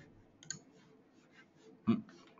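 A few faint computer mouse clicks, with one louder short click near the end.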